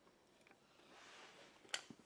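Near silence: faint room tone with a single short click near the end.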